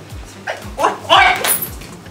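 A young man cries out "oy!" (Thai for "ouch") in pain several times in quick succession, loud and yelp-like, starting about half a second in. Background music with a steady low beat runs underneath.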